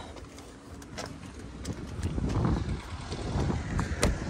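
Wind buffeting the phone's microphone, with a low uneven rumble and a few light clicks and knocks from handling.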